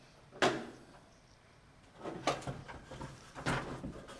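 A sharp knock about half a second in, then two clusters of softer knocks and rattles around the middle and near the end: handling noise from work on the framing.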